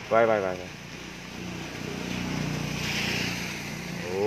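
A vehicle passing on the wet street: engine hum and tyre hiss swell over about two seconds and then fade. A brief word from a voice comes right at the start.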